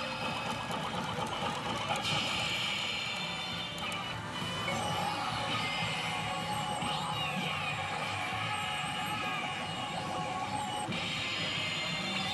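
Tom and Jerry–themed pachinko machine playing its music and electronic sound effects, with pitch sweeps and a dense clattering din; the sound shifts several times as the effects change.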